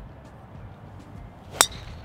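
A golf driver strikes a teed ball once about one and a half seconds in: a single sharp, loud crack with a brief ringing tail.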